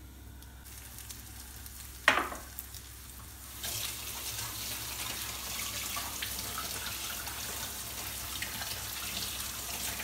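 Flour-coated çinekop (young bluefish) being laid into hot oil in a frying pan, the oil sizzling. The sizzle swells up about three and a half seconds in and then holds steady, with a brief sharp sound about two seconds in.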